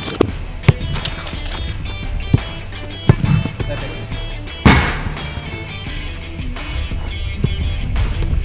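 Background music with a steady beat, over about four sharp thuds of a football being kicked, the loudest a little past halfway.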